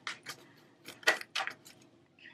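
A deck of astrology oracle cards being shuffled by hand: several short, crisp card flicks and snaps spread over two seconds.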